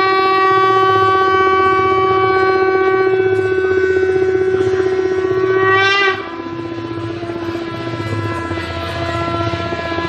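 Conch shell (shankha) blown in one long, steady, loud blast that drops suddenly to a softer held note at the same pitch about six seconds in.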